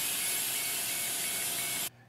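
Steady air hiss from an electric transit bus's pneumatic system with its front doors open, with a faint high beep repeating every half second or so. It cuts off abruptly just before the end.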